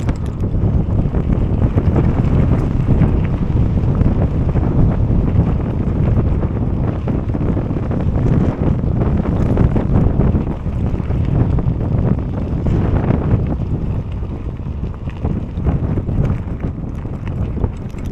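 Wind buffeting the microphone of a camera riding along on a mountain bike: a loud, steady rumble that eases slightly in the last few seconds.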